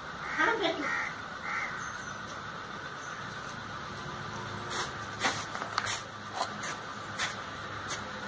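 A crow caws a few times in the first couple of seconds. Then a steel spoon clinks sharply against a bowl and a steel plate about eight times in the second half, while paste and oil are spooned out.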